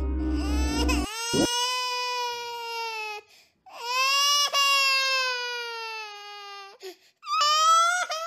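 A voice crying in three long, drawn-out wails, each sliding slowly down in pitch, with short breaks between them. It follows background music that cuts off about a second in.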